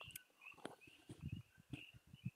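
Near silence with faint gulps and swallows as beer is drunk from a glass mug.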